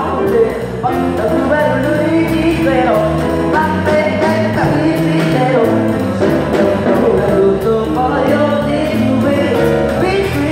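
Live music: a singer singing into a microphone over a drum kit that keeps a steady beat.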